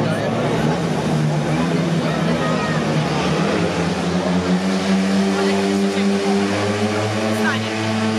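Several 500 cc single-cylinder speedway bike engines revving at the start gate. They settle into a steady held rev from about halfway through, with a brief rise in pitch near the end.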